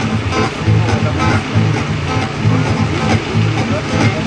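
Acoustic guitar strummed in a steady rhythm, played through a stage PA.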